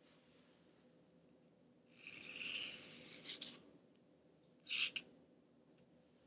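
Fingertips tracing a sandpaper letter J on a wooden card, a soft scratchy rub lasting about a second and a half, then a shorter one about five seconds in.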